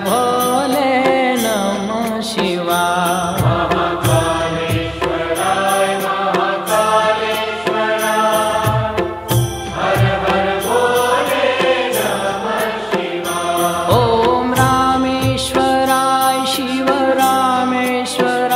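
Devotional music: a Shiva mantra chant sung over instruments with a regular drum beat.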